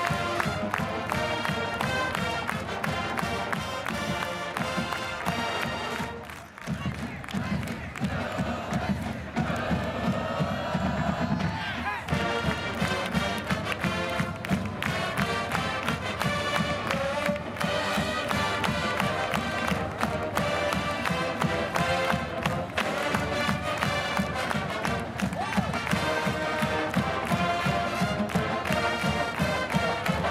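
College marching band playing loudly on brass and drums with a steady beat. About six seconds in the music drops out briefly, then the brass swells back in and the drum beat resumes.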